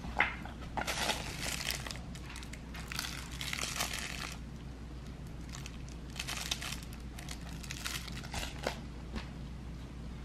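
A soft crinkle toy for babies being shaken and handled: crinkling and rustling in four short bursts, with a sharp tap right at the start.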